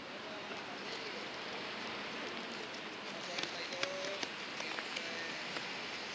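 Outdoor ambience at a running track: a steady rushing noise with faint, distant voices, and a few sharp clicks around the middle.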